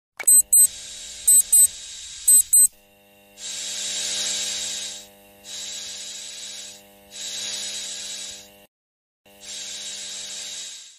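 Electric nail drill unit beeping in three double beeps over a low hum as it is switched on and set. Then the handpiece runs with a steady whine, its sanding-cap bit grinding a toenail in four passes of about a second and a half each.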